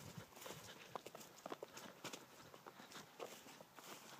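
Faint footsteps crunching over dry, matted grass: a string of small irregular crackles and soft clicks.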